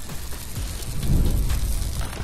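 Sound-designed intro sting for a podcast's animated logo: a noisy rumble that swells to a peak about a second in, with crackling ticks scattered through it.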